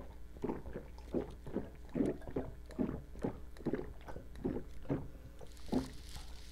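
Gulping swallows as two people drain glasses of drink, a regular run of about two to three gulps a second.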